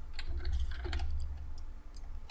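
Light, irregular clicks from a computer keyboard and mouse, several taps about two seconds apart at most, over a low steady hum.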